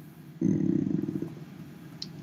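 A person's low, creaky, drawn-out 'uhh' of hesitation, starting about half a second in and fading out within a second.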